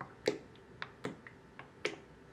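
A wooden spoon stirring a thick mixture in a glass cup, knocking against the glass in a run of sharp, uneven clicks, about four a second.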